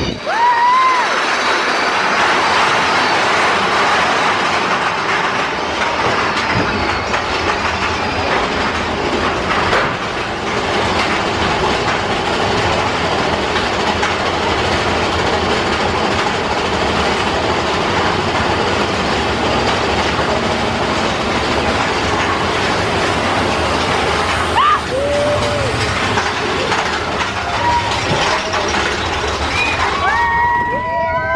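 Big Thunder Mountain Railroad mine-train roller coaster running along its track, heard from a seat on the train as a loud, steady rattling rush. There are a few short rising whoops from riders near the start and near the end.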